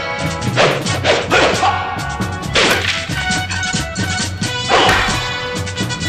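Dubbed kung fu film swish effects for swinging limbs and a staff: about four sharp, whip-like swooshes, over the film's orchestral theme music.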